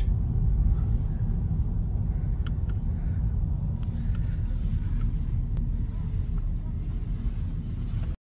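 Steady low rumble of a car's road and engine noise heard from inside its cabin while it drives.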